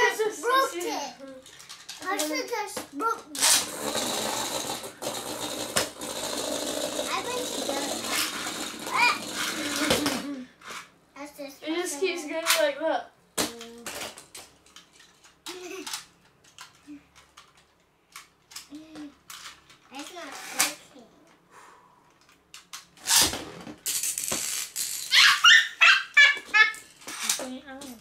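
Beyblade spinning tops launched and spinning on a plastic tray, a steady scraping whirr that lasts about seven seconds from a few seconds in and then cuts off suddenly. Children's voices come and go around it, loudest near the end.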